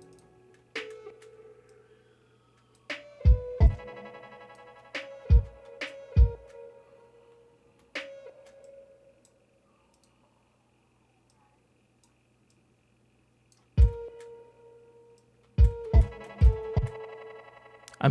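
Short stop-start playback of a lo-fi music loop: a sampled wooden flute holds single notes, time-stretched in Ableton's Complex Pro mode, which gives it a breathy tone, over a few deep drum thuds. Playback cuts off for several seconds in the middle and then starts again near the end.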